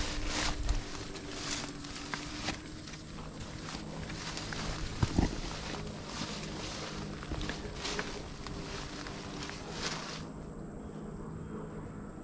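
Footsteps pushing through dense kudzu vines, the leaves and stems rustling and crackling in irregular strokes, with a faint steady low hum underneath. The rustling eases about ten seconds in.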